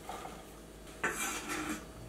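Diced celery, green onion and pickle being scraped from a wooden cutting board into a glass mixing bowl: two short scraping sounds, the first starting suddenly about a second in.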